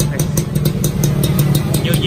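Suzuki Xipo two-stroke motorcycle engine idling steadily through an aftermarket chrome muffler, with an even, regular pulse.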